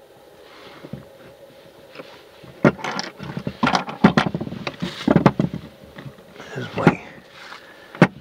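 Knocks and clatter from a USB microscope on its metal stand being handled and shifted on a wooden bench, irregular and loudest in the middle of the stretch. A faint steady hum sits underneath.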